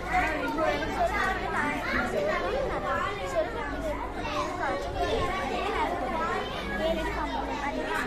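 Many children talking at once: overlapping chatter with no single voice standing out, over a steady low hum.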